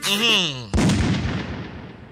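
A single sudden blast like a gunshot or cannon sound effect, about a second in, fading away over nearly two seconds.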